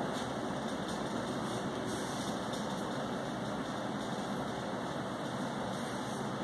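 Steady, even rush of air from an electric floor fan running.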